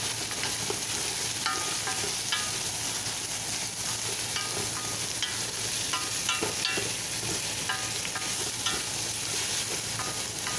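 Shredded meat frying in a stainless steel pot with a steady sizzle, stirred so that the utensil scrapes and knocks against the pot. The knocks give short ringing clinks about once or twice a second.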